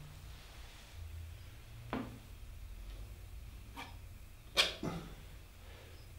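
Paint being mixed on a palette: four short taps and clicks, the loudest about four and a half seconds in, over a low steady hum.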